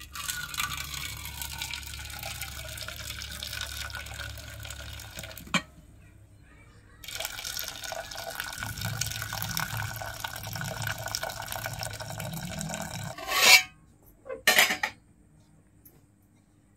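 Cooking water from boiled amaranth greens being poured from a lidded aluminium pot into another aluminium pot, the stream splashing into the liquid in two pours with a short pause between them. Near the end come two loud metallic clanks from the pots.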